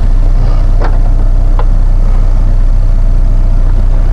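Steady low hum of a 2017 Honda Accord LX's 2.4-litre four-cylinder engine idling, picked up at the rear of the car.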